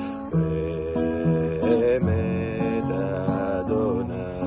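A man singing a Hebrew liturgical song in a chant-like melody, gliding between held notes, over a strummed acoustic guitar.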